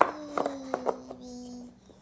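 Wooden puzzle pieces knocking on a wooden puzzle board: one sharp knock at the start, then a few lighter clicks. Under them a voice hums one long, slightly falling note.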